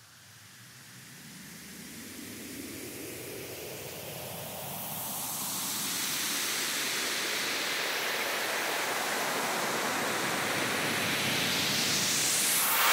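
A hiss-like noise swell, building steadily in loudness and brightness over several seconds. It is the rising noise sweep that leads into an electronic music track.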